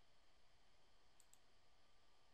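Near silence, broken a little over a second in by two faint, quick clicks of a computer mouse, one right after the other.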